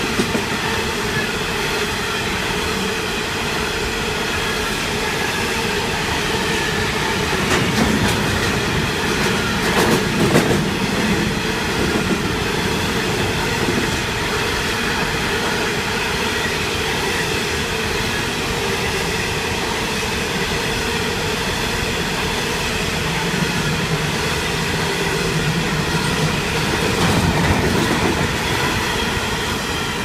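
Long freight train of steel coal hopper wagons rolling past: a steady rumble and rattle of wagon wheels on the rails, with high steady whining tones over it and a burst of clacking over rail joints about ten seconds in. The sound eases off near the end as the last wagons go by.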